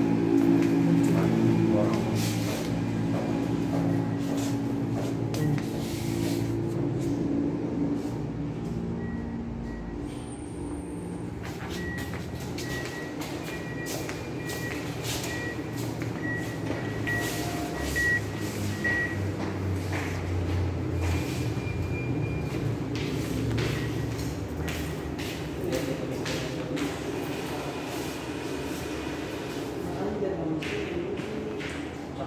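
ATM lobby sounds: background music and voices, loudest at first, then from about twelve seconds a high electronic beep repeating about twice a second for several seconds, typical of an ATM's prompt tone. Scattered clicks and handling noise run throughout.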